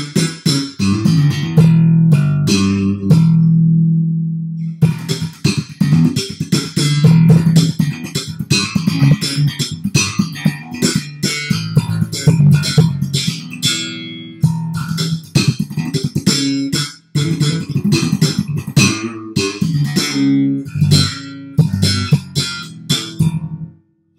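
Custom Alembic Scorpion electric bass played solo in its own pure Alembic tone: a run of plucked notes, one held note ringing about three seconds in, then quick, busy lines of notes.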